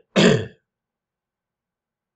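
A man clearing his throat: one short, rough burst right at the start.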